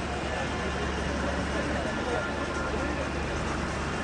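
Indistinct talk among people standing close by, over a steady low rumble of outdoor background noise.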